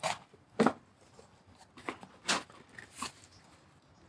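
Hands handling a black cardboard product box, its lid and a booklet: about five short taps and scrapes of card, with quiet between.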